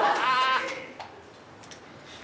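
A woman's high-pitched, wavering laugh, lasting about half a second at the start.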